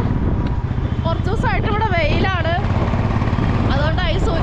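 Motorcycle engine running steadily at road speed, a constant low rumble. A person's voice talks over it between about one and two and a half seconds in.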